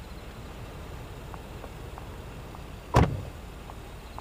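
A car door shut once, sharply and loudly, about three seconds in, over a steady low rumble, with faint light clicks before it.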